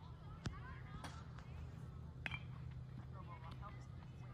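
Distant voices of players on a baseball field, with two sharp baseball impacts about two seconds apart, over a steady low hum.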